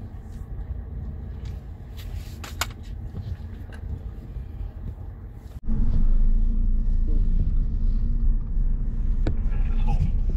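Low rumble of a car driving slowly, heard from inside the cabin. A little over halfway through it jumps suddenly to a louder, deeper rumble.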